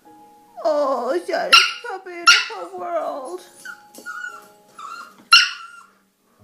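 Spaniel puppy whining and crying in a string of high cries that mostly fall in pitch, with a louder, sharper yelp about five seconds in.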